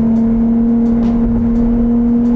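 Ferrari 296 GTS's turbocharged 3.0-litre V6 running at a steady, held engine speed under power, one constant pitch, heard from the open-top cabin with wind and road noise underneath.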